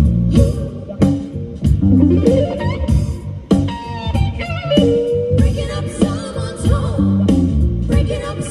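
Live blues-rock band: electric guitar playing lead lines with bent, gliding notes over bass guitar and drums.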